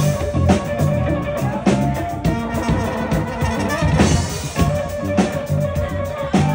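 Live funk band playing: drum kit keeping a steady beat under a bass guitar line and sustained keyboard notes.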